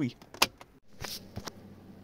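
A small plastic switch in a BMW 3 Series centre console clicked once, sharply, about half a second in. A few faint ticks follow over a quiet car-cabin background.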